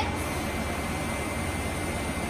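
Steady rush of air with a low hum from the laser setup's cooling equipment running, with a faint steady high tone over it.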